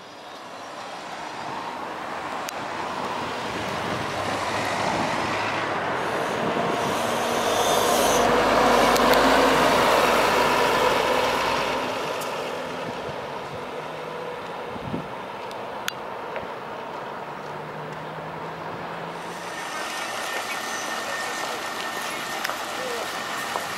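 Bogdan A30220 city bus driving past on a street, its diesel engine and road noise swelling to a peak about eight to eleven seconds in and then fading, with other traffic in the background.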